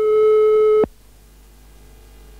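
Answering machine beep: one steady electronic tone just under a second long that cuts off sharply, followed by a faint hum.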